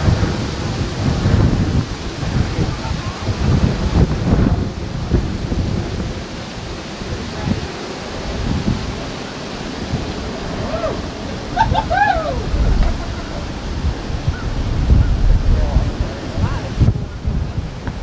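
Wind buffeting the camera's microphone: a low, uneven rumble that swells and drops in gusts. A few short chirps come about two-thirds of the way through.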